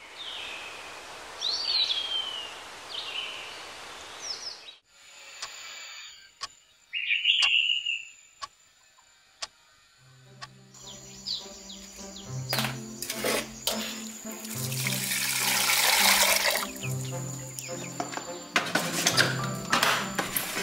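Birds chirping over a steady rushing outdoor noise, which cuts off suddenly after a few seconds. Then come scattered sharp ticks and clicks, and from about halfway a music track with a slow bass line plays, with more clicks near the end.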